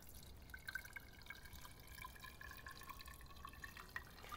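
Boric acid and methyl alcohol flux solution trickling from a plastic bottle into a metal booster tank: faint pouring with a thin, steady ringing note.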